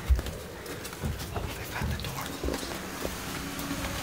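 Camera-handling bumps and footsteps on a camper's floor: a sharp thump just after the start, then irregular lighter knocks and clicks.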